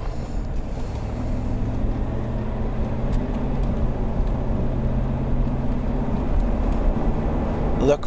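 A low, steady motor hum over a constant rumble, coming in about a second in and fading near the end.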